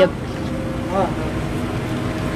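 Steady mechanical hum holding several constant low tones, with a brief faint voice about a second in.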